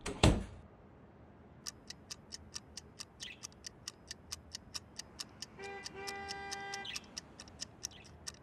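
Clock ticking rapidly and evenly, about five ticks a second, after a short loud burst of noise at the start. A sustained pitched tone, briefly broken, sounds over the ticking about two-thirds of the way through.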